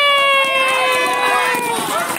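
A spectator's long, high shout of encouragement, held for nearly two seconds and sinking slightly in pitch before breaking off near the end, followed by scattered voices.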